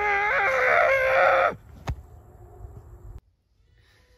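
A rooster crowing: one loud call of about a second and a half that wavers in pitch, followed by a single sharp click.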